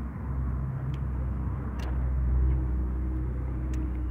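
A motor running steadily with a low rumble and hum, with a few faint light clicks.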